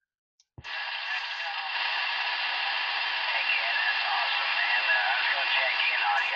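A click about half a second in as the CB base radio drops back to receive, then a steady hiss of skip static with a distant station's voice faintly heard through it.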